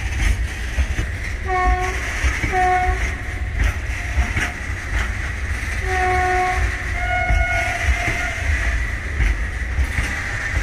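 Loaded freight train's covered wagons rolling past: a steady low rumble with wheel clicks over the rail joints. A train horn gives two short toots about one and a half seconds in, another near six seconds, and then a longer, higher note around seven seconds.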